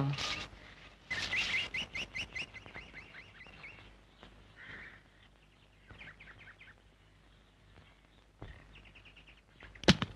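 Birds chirping: a quick run of repeated high chirps, about five a second, starting about a second in and fading, then scattered chirps later. A single sharp knock near the end is the loudest sound.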